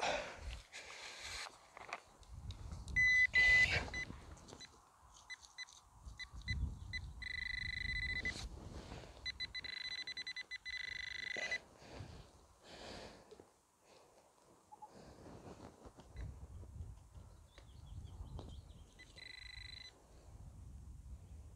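Handheld metal-detecting pinpointer probe beeping with a high, steady tone as it is pushed through a plug of soil. It sounds briefly, then in a longer run of rapid pulses running into a continuous tone, and again in a few short blips near the end: the metal target is in the plug. Low rustling of gloved hands breaking up the soil comes in between.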